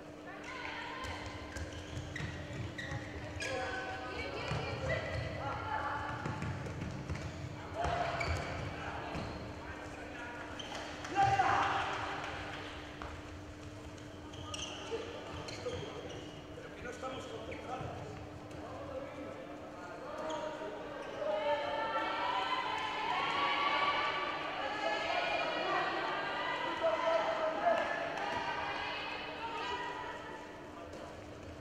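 A handball being bounced on an indoor sports court, with low thuds from the ball and players' feet and a louder impact about eleven seconds in, under a background of voices that grows fuller about twenty seconds in.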